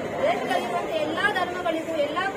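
Speech only: a woman speaking, with people chattering around her.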